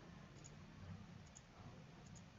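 Near silence: faint room tone with a couple of soft computer mouse clicks, about half a second in and again near the middle.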